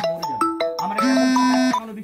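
A mobile phone ringtone: a short electronic melody of quick stepped notes over a held low note, repeating its phrase about a second in.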